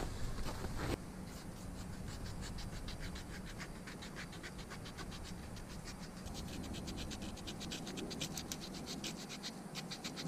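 A knife blade scraping birch bark in quick, even strokes, about five a second, shaving it into fine tinder to light a fire.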